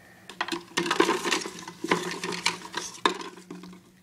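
Small plastic lids and containers handled and knocked together: a busy run of clicks, taps and rustles that dies away just before the end.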